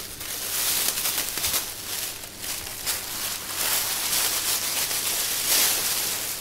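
Disposable plastic apron crinkling and rustling in an uneven, continuous run of crackles as it is unfolded and put on.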